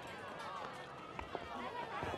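Quiet street background with faint, distant voices and a few light taps of footsteps.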